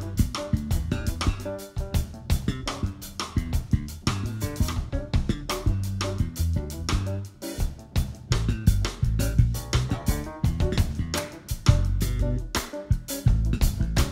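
Live jazz band playing an instrumental passage with no vocals: an electric bass line and a drum kit with kick, snare and cymbals, with piano.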